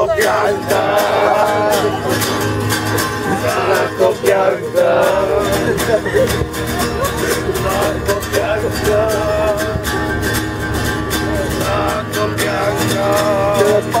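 Acoustic guitar strummed steadily while several voices sing along.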